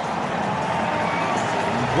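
Steady noise of a large stadium crowd, a continuous even roar.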